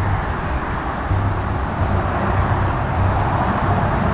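Steady road traffic noise with a low rumble underneath, even throughout with no distinct events.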